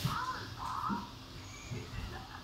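Cartoon characters laughing on the episode's soundtrack, heard faintly in short, high, wavering bursts.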